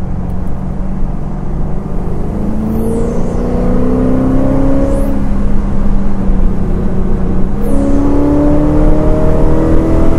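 Blueprint 350 small-block Chevy V8 crate engine, breathing through long-tube headers and an X-pipe exhaust, accelerating hard, its pitch rising steadily from about two seconds in. Near eight seconds in the pitch drops suddenly as the three-speed automatic shifts up, then climbs again.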